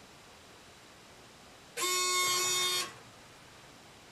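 An electronic buzzer sounds once, a steady buzzing tone of about a second that starts and stops abruptly around the middle.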